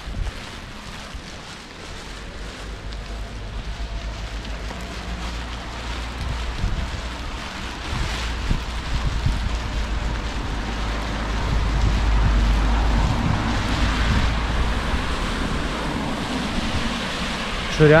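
Wind and heavy rain on a camera microphone: a steady hiss of rain with a low rumble of wind on the mic, building after a few seconds and loudest a little past the middle.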